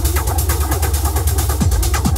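Hypnotic techno track: a steady deep bass drone under fast, even hi-hat ticks, with the kick drum dropped out for a moment and coming back near the end.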